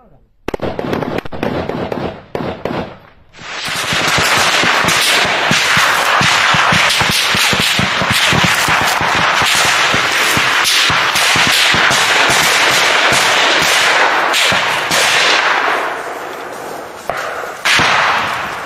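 Gunfire in combat: bursts of rifle fire from about half a second in, then near-continuous automatic fire from several guns from about four seconds in, thinning out near the end.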